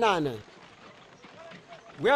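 Speech: a voice trailing off, falling in pitch and ending about half a second in, then a pause with only faint background noise.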